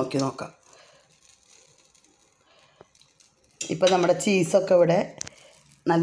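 A woman speaking, with a quiet gap in the middle that holds only faint handling noise and one small click.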